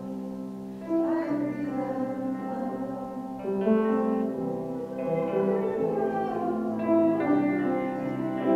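Slow, gentle hymn music of long held notes, moving to new notes every second or two.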